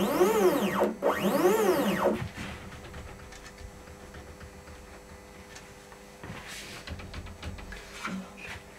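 Stepper motors of a 3D-printed CNC router driving the gantry along its TR8 lead screws in two short jog moves. Each move is a whine that rises and then falls in pitch as the motors speed up and slow down. After about two seconds the motors stop, leaving only faint handling knocks.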